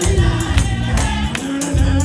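Gospel choir singing loudly with a low bass accompaniment and rhythmic hand claps, about two to three hits a second.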